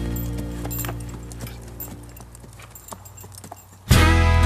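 A horse's hooves clip-clopping unevenly at a walk on a dirt trail, over a country song that fades away. Loud music starts again abruptly at the very end.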